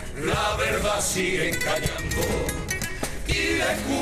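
A Cádiz carnival comparsa performing: a group of men's voices singing over instrumental accompaniment, with low drum beats about every second and a half.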